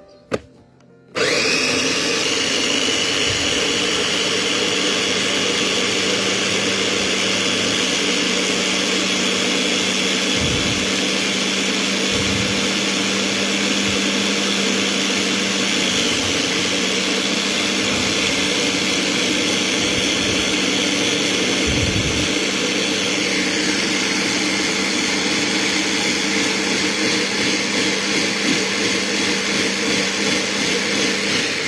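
A Mitochiba electric blender, its motor head held down by hand, switches on about a second in and runs steadily, pureeing spinach leaves with a little water into a green juice. Its whine drops slightly in pitch after about twenty seconds.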